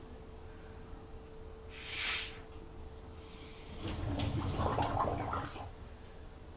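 A person blowing into a dishwasher's drain hose to push air back through a drain that won't empty: a short hard puff about two seconds in, then about a second and a half of gurgling as the air bubbles through the water in the hose and sump.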